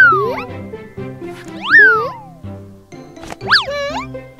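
Cartoon boing sound effects over bouncy children's background music: three quick glides that swoop up in pitch and fall back down, at the start, near the middle and near the end, marking the bounces on an inflatable bouncy castle.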